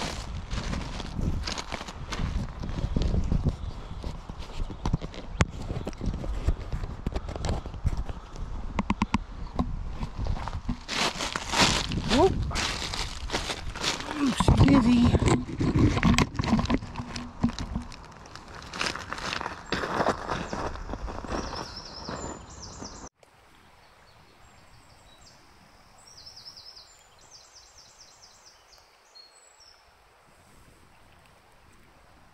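Footsteps on a pebble and shingle riverbank, a quick run of irregular steps over loose stones. About three-quarters of the way through the sound cuts off suddenly to a much quieter, faint outdoor background.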